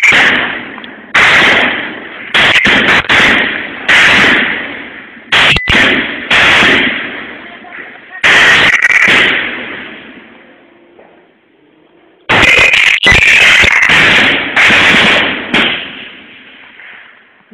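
Gunfire: about a dozen sudden, distorting shots in irregular clusters, each trailing off in a long echo, with a lull of about two seconds before more shots near the end.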